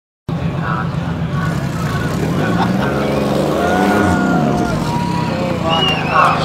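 Nissan GT-R R35 race car's twin-turbo V6 running at a rough, lumpy idle, with the revs rising and falling a little about halfway through.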